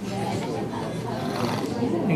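People's voices talking, with no clear non-speech sound.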